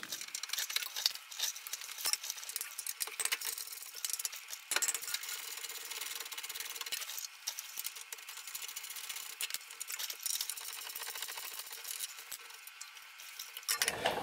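Fast-forwarded, sped-up sound of a ratchet wrench working the brake caliper bracket bolts: rapid clicks and small metal clinks over a hiss, thin and with almost no low end.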